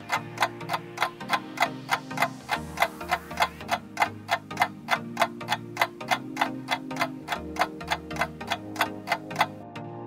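Clock-ticking sound effect of a quiz countdown timer: fast, even ticks, about four a second, over soft background music. The ticking stops shortly before the end as time runs out.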